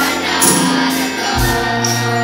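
School wind band playing a slow ballad with a choir singing sustained chords. A brief bright splash comes about half a second in, and a low bass note enters about midway.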